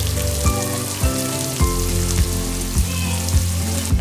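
Chopped red onions sizzling as they fry in hot oil, a steady hiss, with background music playing under it.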